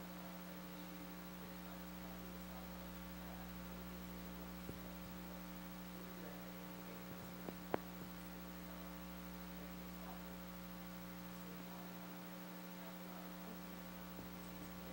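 Steady electrical mains hum on the recording, with a few faint clicks about halfway through, the sharpest a little after the middle.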